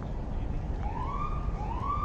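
Emergency vehicle siren giving two short rising whoops, the first about a second in and the second just before the end, over a steady low rumble.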